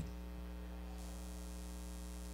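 Steady low electrical mains hum with a faint hiss, from the microphone and sound system, heard in a pause between spoken sentences.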